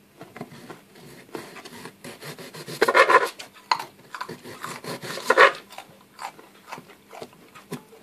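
Kitchen knives cutting cucumber and carrot on a plastic chopping board: a run of short taps and scrapes. Two brief pitched sounds come in, about three seconds in (the loudest) and again about five seconds in.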